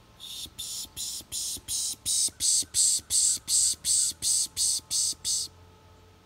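A series of about fifteen short, harsh, high-pitched calls from an animal, about three a second. They grow louder over the first two seconds, hold steady, then stop abruptly shortly before the end.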